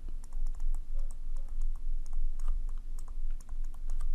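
Stylus writing on a tablet screen: a quick, irregular run of small taps and clicks as a word is handwritten, over a low rumble of the device being handled.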